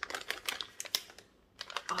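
A plastic snack pouch being torn and pulled open: a quick run of crinkly clicks and crackles for about a second, then a short pause.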